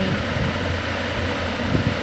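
Steady low hum of a running machine, with an even hiss above it.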